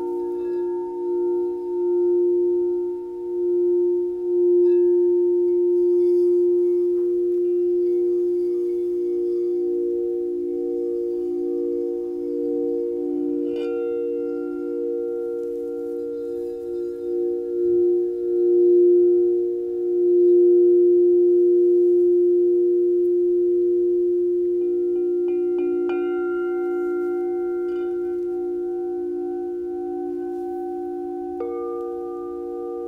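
Crystal singing bowls ringing together in several sustained, overlapping tones that pulse slowly as they beat against each other. A brief, brighter, higher ring sounds about halfway through, and new higher tones join near the end.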